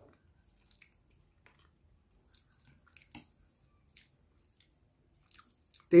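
A man quietly chewing a mouthful of dal: soft, scattered mouth clicks and small wet ticks, one a little louder about three seconds in.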